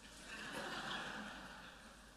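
Quiet laughter from a congregation, a soft wash of chuckles that swells and fades within about a second and a half.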